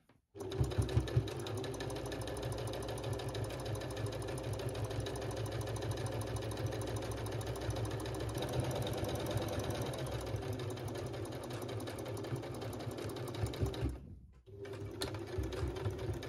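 Domestic electric sewing machine stitching jersey fabric at a steady speed, a rapid, even run of needle strokes. It stops briefly about two seconds before the end, then starts stitching again.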